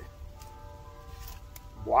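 A large Bowie knife's blade slices quietly through four layers of leather belt. Two faint ticks come a little past halfway as the blade works through.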